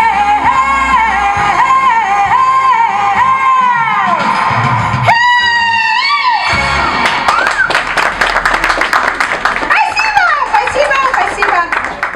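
A woman sings over backing music and finishes on a long high note with vibrato about five seconds in. Audience applause with whoops and voices follows to the end.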